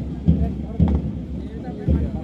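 A marching band's bass drum beating time, low thuds about every half second, under a murmur of voices.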